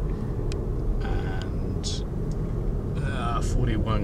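Steady low road and tyre rumble heard inside the cabin of a Kia e-Niro electric car driving at speed, with no engine sound.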